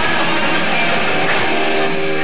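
Live heavy-metal band playing: distorted electric guitars over a drum kit, loud and dense, with a chord held ringing near the end.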